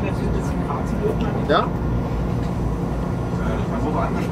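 Steady low running noise of an ICE high-speed train travelling on the line, heard from inside the driver's cab.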